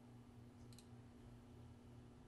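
Near silence: a steady low hum of room tone, with one faint computer-mouse click a little under a second in.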